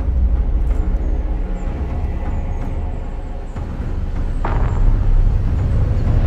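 Deep, continuous rumble of a sci-fi spacecraft sound effect, with a sharp rising whoosh about four and a half seconds in that swells again near the end.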